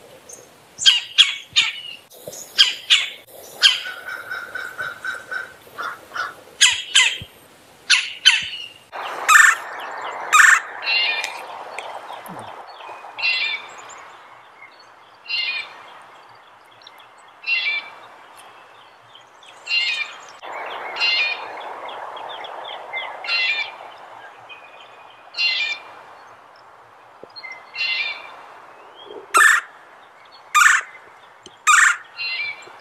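Red-bellied woodpecker calling from a recording: a flurry of quick, sharp notes in the first several seconds, then one short call about every two seconds.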